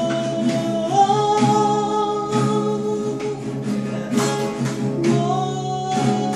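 Three acoustic guitars strummed together under singing, with long held notes that step up and down in pitch.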